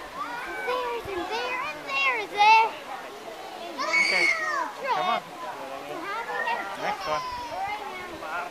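High-pitched children's voices calling and squealing without clear words, coming and going, the loudest about two and a half seconds in.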